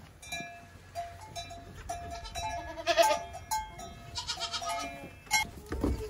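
Several goats bleating in a stable, short calls one after another, loudest about three seconds in.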